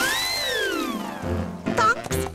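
A whistle-like cartoon sound effect for a whale. It swoops up quickly and then glides slowly down over about a second. A voice starts just before the end.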